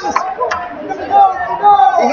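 Indistinct chatter of several people talking at once, with voices overlapping throughout and a brief sharp click about half a second in.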